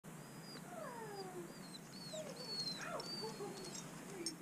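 A dog whining: a string of high, thin whines and lower whimpers that slide down in pitch, one after another.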